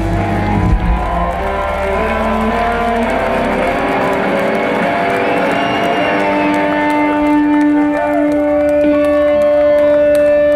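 Live rock band with electric guitars and drums. About four seconds in the drums drop out, leaving long held guitar notes and sliding, wavering pitches.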